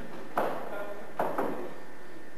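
A man's voice saying a few short words, each starting sharply: the conductor finishing his remarks before the orchestra plays.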